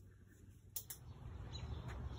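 Faint room tone, a sharp click a little under a second in, then quiet outdoor background with birds chirping.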